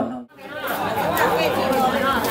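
A group of people talking over one another. The sound drops out almost completely for a moment near the start, then the chatter fades back in and carries on at a steady level.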